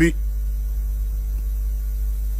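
A steady low electrical hum with faint higher steady tones, unchanging throughout.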